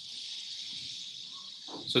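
Steady high-pitched hiss of background noise with a faint tone in it. A man's voice starts speaking right at the end.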